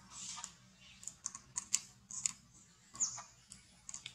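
Baby macaque suckling at its mother's nipple: a run of quick, irregular wet clicks and smacks from its mouth.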